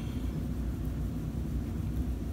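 Steady low background hum with no distinct events: room tone.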